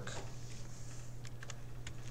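A few faint computer keyboard keystrokes in the second half, over a low steady hum.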